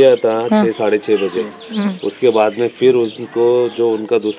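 Men's voices talking in the open air, continuous conversational speech.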